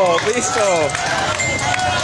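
Several men shouting and yelling over one another, their voices overlapping in a loud commotion.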